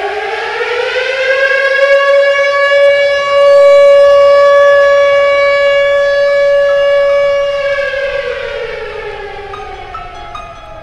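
A siren rising in pitch over the first two seconds, holding one steady wail, then falling away over the last two seconds.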